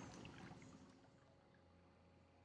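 Near silence: the faint sound fades out in the first second.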